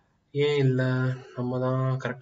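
A man's voice drawing out two long sounds held at a steady pitch, the first about a second long, after a brief silence at the start.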